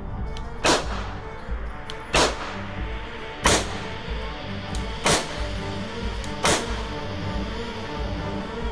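Five single pistol shots, evenly spaced about one and a half seconds apart, each a sharp crack, over a background music track.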